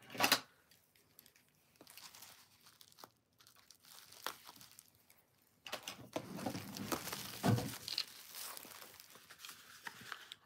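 Packaging being handled and torn open by hand: a click at the start and faint rustling, then louder crinkling and tearing from about halfway through.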